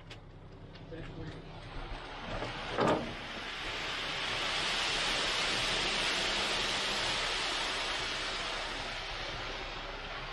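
Wet concrete pouring down a ready-mix truck's chute into the slab: a rushing hiss that builds about three seconds in, holds loudest through the middle and eases a little near the end. A single sharp knock comes just before the rush builds.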